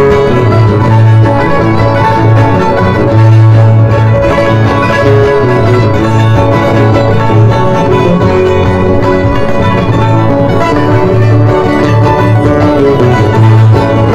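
Andean string music for the Qorilazo dance: strummed guitars with a violin playing a lively dance tune over a steady pulsing bass.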